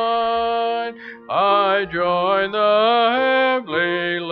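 A hymn sung slowly in long held notes, with a short break about a second in before the next phrase slides up into a wavering note.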